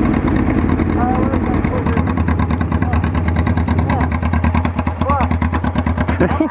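Motorcycle engines idling steadily with an even low pulse, the bikes stopped side by side. Brief laughter and voices come over the idle.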